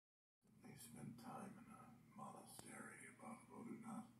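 A man speaking softly, close to a whisper, with one brief click about halfway through.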